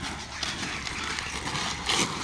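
Inline skate wheels rolling on rough asphalt, with quick clicks and clacks as the skates are set down and shifted between cones, and a sharper knock just before the end.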